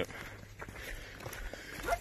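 Faint footsteps scuffing on a packed dirt trail.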